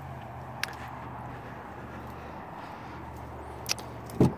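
Steady low background hum with two short sharp clicks, one just over half a second in and one near the end, the second as a hand takes hold of the pickup truck's exterior door handle.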